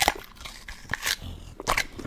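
English bulldog chewing food held out to it by hand, close-miked: irregular wet crunches and mouth smacks, a few each second.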